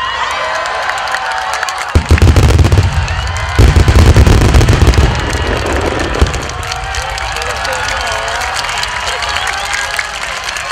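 Booms of about a hundred 12-inch (shakudama) aerial firework shells bursting almost together. A dense run of overlapping booms comes in about two seconds in, a second, louder run at about three and a half seconds rumbles until about five seconds, and a last thump follows near six seconds. Crowd voices and cheers carry on underneath.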